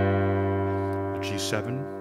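A full jazz chord played on the Roland Fantom keyboard's acoustic piano sound, struck just before and held, its many notes slowly fading.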